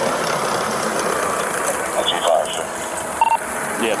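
Steady noise of idling vehicles and traffic on the interstate, with a faint voice and a short electronic beep a little after three seconds in.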